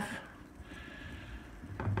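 A pause in a man's talk, filled only by faint room noise with a soft hiss; his voice starts again near the end.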